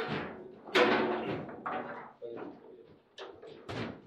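Table football ball and rods knocking on a foosball table during play. The loudest crack, about a second in, rings on, and lighter clacks follow every half second or so. The goal that ends the point falls in this stretch.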